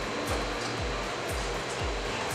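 Background music with a steady low kick-drum beat about twice a second, over a continuous rushing noise.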